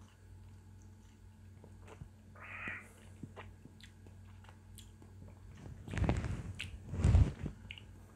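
Mouth sounds of a person tasting a sip of whisky: faint wet clicks and a short breath about two and a half seconds in, then two louder breathy sounds in the last two seconds.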